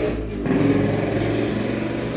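A small motor running with a steady buzzing drone.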